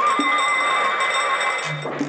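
Old electric school bell with metal gongs ringing continuously, stopping after about a second and a half, over background music.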